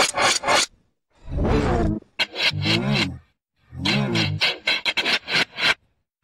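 Heavily effect-processed sound clip: short pitched, voice-like swoops alternating with bursts of rapid stuttering, each burst about a second long with brief silent gaps between them.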